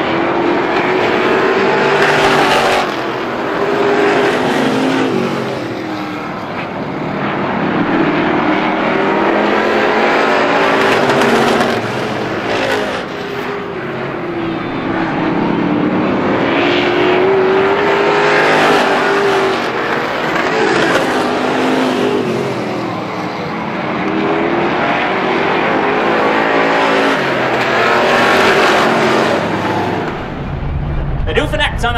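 A pack of Strictly Stock class race cars running round a short oval at pace-lap speed before the start, the mixed engine sound rising and falling in loudness and pitch every few seconds as the cars come past and move away.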